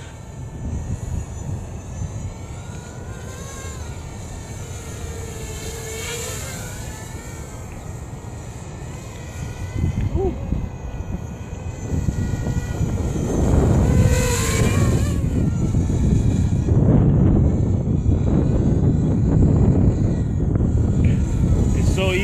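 Quadcopter drone's electric motors and propellers whining, the pitch rising and falling as the throttle changes, faint while the drone is high up. About halfway in the drone is close by and the sound gets much louder, with a rushing noise of air.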